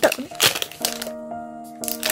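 Clear plastic wrapping crinkling and crackling in a few sharp bursts in the first half second as it is pulled off a small box, over soft piano background music that holds steady notes.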